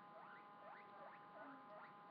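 Faint, repeated short rising squeaks, about three a second, from a small pet animal, over a low steady hum.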